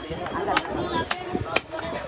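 A large knife chops a catla fish into pieces against a wooden log block: about four sharp strokes, roughly half a second apart, over background voices.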